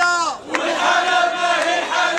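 A crowd of protesters chanting a slogan in unison: a short called phrase, then many voices answering together in one long held line from about half a second in.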